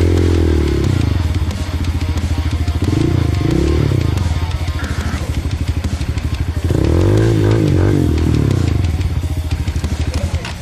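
Dirt bike engine revved up and down three times, under load on a steep, rutted trail climb, with music playing underneath.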